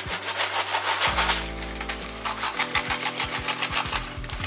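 Kraft paper being handled and pulled open around a bundle of flowers, a dense scratchy rustling, over background music with sustained notes.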